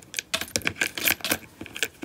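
Coins clinking as they are pushed one at a time through the slot in a savings jar's plastic lid and dropped in, a quick irregular run of sharp clicks.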